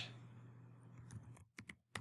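Faint typing on a computer keyboard: a quick run of several keystrokes in the second half.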